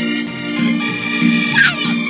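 Organ music playing sustained chords, with a short rising-and-falling sound over it about one and a half seconds in.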